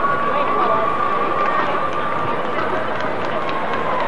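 Stadium ambience from the stands: crowd noise with an indistinct, echoing voice, likely the public-address announcer, and a thin steady high tone running underneath.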